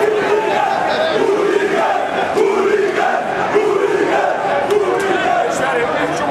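Large crowd of male football supporters chanting together, loud, drawn-out syllables repeated over and over with short breaks between them.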